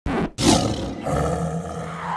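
A loud, rasping animal growl like a roar: a short first burst, a brief break, then a longer, stronger roar that settles into a held, lower growl.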